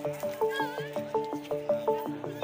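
Background music: a quick melody of plucked or struck notes, about seven a second, over held lower notes. A brief wavering high call cuts in about half a second in.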